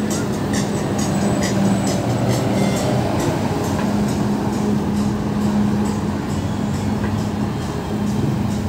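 City street traffic at a busy intersection: a city bus and cars driving through, under a steady low engine hum.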